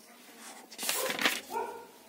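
A paper page of a bound workbook being turned, a loud rustling swish about a second in. It is followed by a brief pitched sound, like a short yelp.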